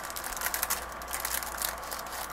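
Clear plastic sleeve crinkling and crackling as it is handled, with scattered light clicks of long acrylic nails against the plastic.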